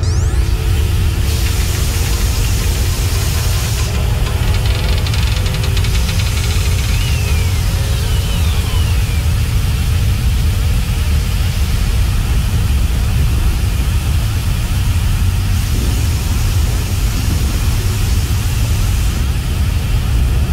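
Animated-film soundtrack: music over a steady deep rumble and hiss, with a low drone slowly rising in pitch and a couple of short falling whistles about seven to nine seconds in.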